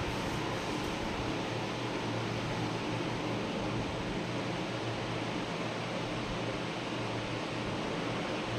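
Steady hiss with a low hum underneath, with no distinct knocks or other events.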